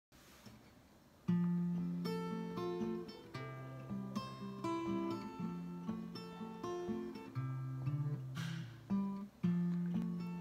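Solo acoustic guitar starting about a second in, notes picked one after another over an alternating bass line: the instrumental intro of a country song.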